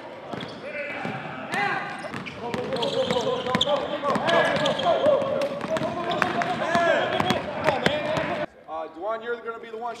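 Basketballs bouncing on a hardwood gym floor amid the overlapping shouts and chatter of players, with many short knocks. About eight and a half seconds in it cuts suddenly to one man talking.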